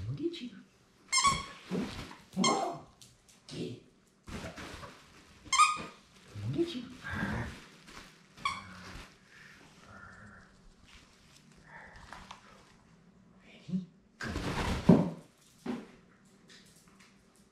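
A basenji giving a run of short, excited yodel-like calls and whines, some gliding upward, while begging for a toy held above it. Near the end comes a loud thump and rustle.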